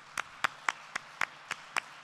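Audience applauding, with one clapper's sharp claps standing out evenly at about four a second over the general clapping.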